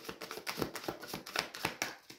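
Tarot deck being shuffled by hand: a quick, uneven run of soft card clicks and slaps.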